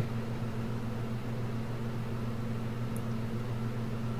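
Steady low hum with a faint hiss, a constant room tone with no events in it. A faint short tick about three seconds in.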